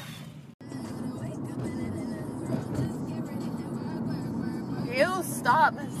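Steady low rumble of a moving car heard from inside the cabin, with music playing, cut by a brief dropout about half a second in. Near the end a woman's voice calls out 'oh' in a wavering, rising and falling pitch.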